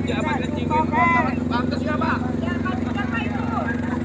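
Voices of a packed crowd talking over one another close by, with no single clear speaker, over a steady low hum.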